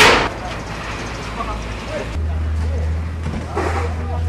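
Faint voices of people talking, with a loud rush of noise right at the start. A steady low hum sets in about halfway.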